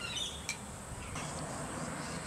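Faint background ambience with a short, high falling chirp at the very start and a single light click about half a second in.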